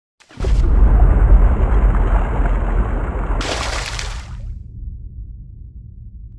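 Cinematic logo sound effect: a loud, deep boom about half a second in, a bright rushing swell about three and a half seconds in, then a long low rumble fading away.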